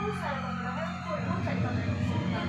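An indistinct voice over a steady low hum.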